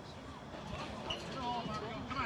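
Faint voices of people talking, over an even outdoor background hiss.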